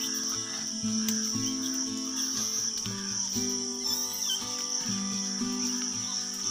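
Steady, high-pitched drone of insects under background music whose low notes change about twice a second.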